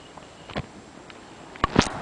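Footfalls of people running on a dry dirt path: a few scattered thuds, two close together near the end, the last the loudest.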